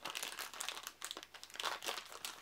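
Thin clear plastic bag crinkling and crackling in the hands as it is worked open, an uneven run of sharp crackles.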